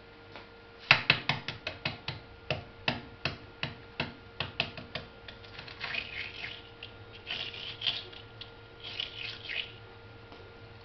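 Hard-boiled egg being cracked and peeled: a quick run of sharp taps and crackles of eggshell for a few seconds, the first the loudest, then softer scratchy crackling as the shell is picked off.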